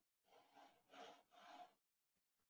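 Near silence, with three faint soft sounds about half a second apart.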